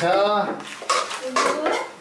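Steel spoon clinking and scraping against a metal pan, with a few sharp knocks around the middle.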